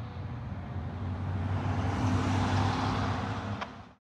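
A fire ladder truck and a car driving past on the road: engine hum and tyre noise swelling to a peak about two seconds in, then fading out quickly at the very end.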